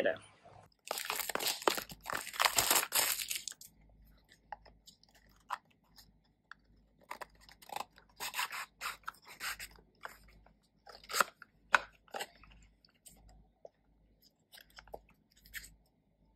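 Product packaging being torn open for about three seconds near the start, then scattered clicks and rustles as a cardboard box and its plastic insert tray are handled and opened to unbox a wireless microphone.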